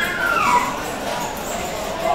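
A dog whimpering: a high whine that slides down in pitch within the first half second or so, over background chatter.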